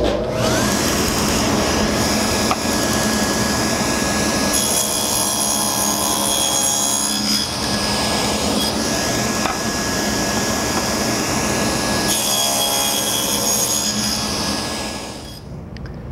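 Table saw with a quarter-inch dado blade starting up with a rising whine, then running steadily while it cuts through a board twice, about five and twelve seconds in, and winding down near the end.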